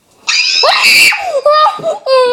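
A child screaming, starting about a quarter of a second in, loud and shrill at first, then going into high cries whose pitch bends up and down.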